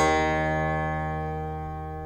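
Guqin, the Chinese seven-string zither, plucked once: a low note with a sharp attack that rings on and slowly fades.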